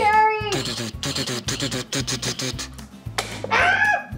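Upbeat background music with a steady beat, with a short high-pitched voice at the start and another rising one near the end.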